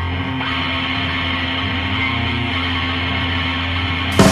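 Heavy metal music: distorted electric guitar holding steady, sustained chords, with no drums.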